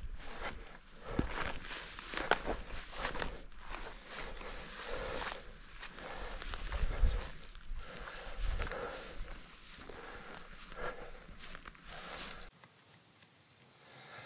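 Footsteps pushing through dense heather and moorland grass, an irregular run of steps with the stems brushing and rustling; it stops abruptly about a second and a half before the end.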